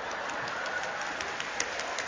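Theatre audience in a pause between lines: a low murmur of crowd noise with scattered hand claps, several short claps a second.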